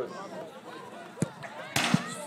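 A football struck with a sharp thud a little over a second in, then about half a second later a louder impact as the diving goalkeeper meets the shot, over faint voices in the background.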